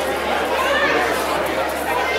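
Several people talking at once: background chatter, with one voice saying "okay" at the start.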